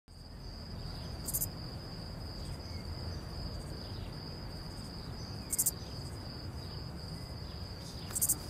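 Crickets trilling on one steady high note over a low night-time rumble, with two brief very high bursts, about a second in and just past halfway.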